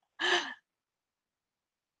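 A woman's single short, breathy sigh, lasting about a third of a second, just after the start.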